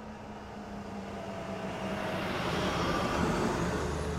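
Car driving, a steady low engine hum with road noise that grows gradually louder.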